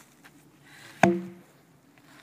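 A long wooden log falls from upright and lands on a packed dirt path: one heavy thud about a second in, with a brief ringing from the wood that dies away quickly.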